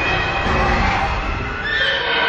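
Trailer sound design: a low rumble under sustained high, wailing tones that swell near the end.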